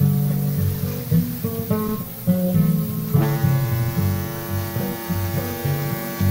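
Acoustic guitar playing an instrumental break between verses of a folk song, bass notes shifting under the strumming. About halfway through, a long held note joins in.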